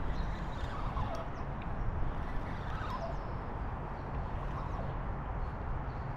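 A few faint, short bird chirps over a steady low rumbling noise.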